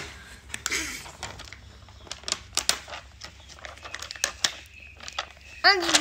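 Hands pressing stickers onto a cardboard disc and handling a plastic sticker sheet: irregular light clicks, taps and crinkles. A child's voice comes in near the end.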